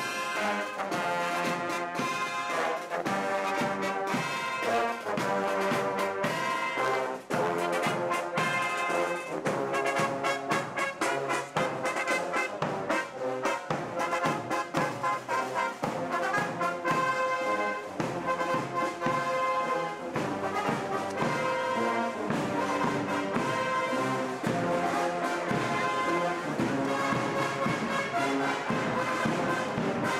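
Brass band music: several brass instruments playing an instrumental passage together in a steady rhythm, with no singing.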